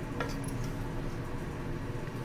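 A wooden spatula stirring thick chickpea curry in an aluminium pressure cooker, with a short clink about a fifth of a second in, over a steady low hum.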